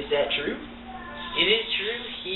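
A person's voice making two short wordless vocal sounds that bend up and down in pitch.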